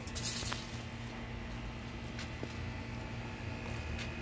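Quiet ambient noise: a steady low rumble with a faint steady hum, and a brief rustle of handling or foliage about a quarter second in.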